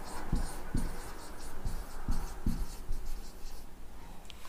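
Marker writing on a whiteboard: a run of short scratchy strokes of the felt tip, with light taps as the tip lands, stopping shortly before the end.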